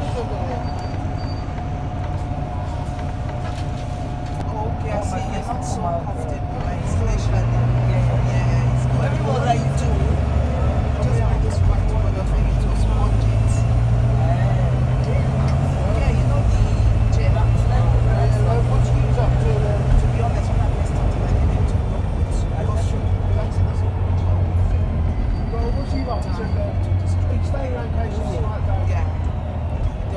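Volvo B9TL double-decker bus's six-cylinder diesel heard from inside the upper deck: the engine note builds after several seconds and steps through a few gear changes as the bus accelerates, then eases off near the end. Passengers chatter in the background.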